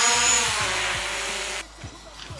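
DJI Mavic quadcopter's propellers buzzing loudly in flight, the pitch rising and falling slightly, cutting off abruptly about a second and a half in.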